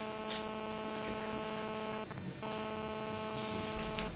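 A steady electrical buzz: one pitched hum with many overtones that starts suddenly, cuts out briefly about halfway through, then resumes.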